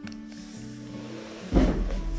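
Quiet background music with soft held notes, then about one and a half seconds in a sudden low thump and rustle of a person moving close to the microphone.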